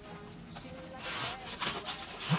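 A nylon carrying bag sliding out of a cardboard box: a rubbing, scraping sound of fabric on card that grows louder about a second in.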